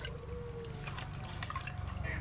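Light dripping and water sounds as a wad of paper is dipped in water, over a steady low hum.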